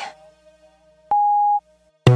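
A single steady electronic telephone-style beep, about half a second long, a little past halfway, at the end of a voicemail-style spoken message in a song's intro, over a faint held music tone.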